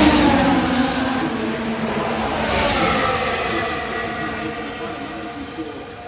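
Formula One car's turbocharged V6 hybrid engine passing close by, loud at first and then fading away over the following seconds, its pitch sliding slightly downward as it goes.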